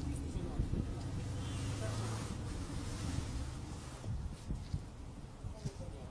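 Low engine and tyre drone of a car heard from inside its cabin, steady for about four seconds and then easing off.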